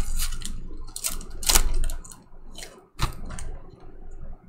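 Foil trading-card pack wrapper being torn open and crinkled by hand: irregular crackling with a few sharp snaps, the sharpest about a second and a half in and again about three seconds in.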